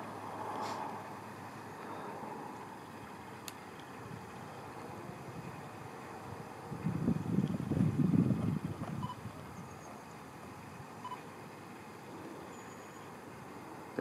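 Steady outdoor background noise, with a louder, irregular low rumble lasting about two seconds around the middle.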